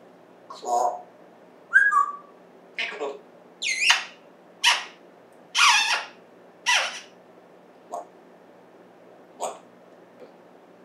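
African grey parrot making a string of about nine short calls, roughly one a second, some of them whistle-like pitch glides.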